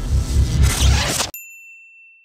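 Programme intro sting: a loud, bass-heavy burst of theme music cuts off abruptly just over a second in, then a single high electronic ding rings and fades away.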